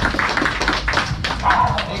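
Audience applauding, many separate claps running together.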